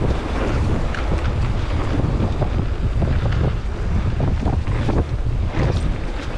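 Wind buffeting the microphone of a moving mountain bike's action camera, with the rumble of tyres on a dirt trail and many small knocks and rattles from the bike.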